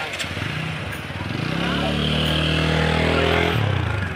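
A motorcycle engine passing close by, growing louder from about a second and a half in and cutting off abruptly near the end.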